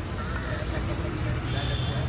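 Busy street ambience: a steady low rumble of vehicle engines in traffic, with faint voices of passers-by.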